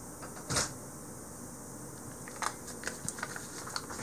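A single soft knock about half a second in, then a run of light, irregular clicks and crinkles in the last second and a half as the wrapper of a softened stick of butter is handled.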